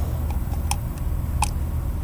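A few faint, small clicks of fingers picking at the O-ring on a plastic oil filter housing cap, about three-quarters of a second apart, over a steady low rumble.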